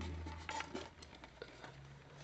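Faint handling noise as a model tank turret is turned over in the hands: a few light clicks and taps. A low hum fades away within the first second.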